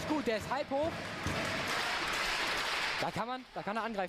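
Audience applauding for about two seconds after a table tennis point, with voices just before and after.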